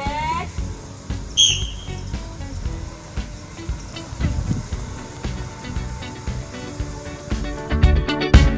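A single short, high-pitched whistle blast about a second and a half in, over low background voices and noise.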